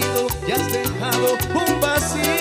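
Cumbia band music in an instrumental passage: a steady percussion beat over a bass line, with keyboard melody lines.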